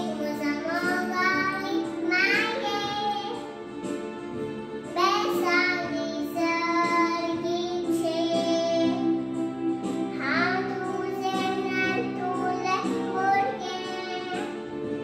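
A young girl singing phrases into a handheld microphone, her voice sliding between held notes, over steady instrumental backing music.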